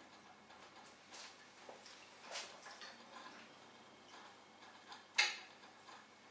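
Quiet handling of a small plastic phone tripod as a phone is fitted into its clamp: faint taps and clicks, with one sharper click about five seconds in.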